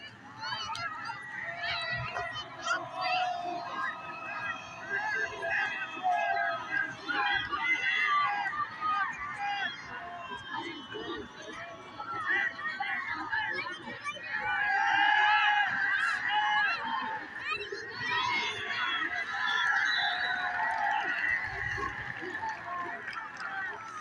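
Football spectators shouting and cheering, many voices overlapping at once, swelling louder a little past halfway.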